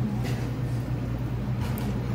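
Steady low background hum, with no speech over it.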